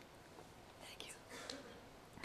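Faint sounds of a woman drinking from a plastic water bottle close to a podium microphone: a few soft sips and breaths about a second in.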